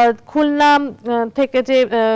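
Speech only: a woman reading newspaper headlines aloud in Bengali.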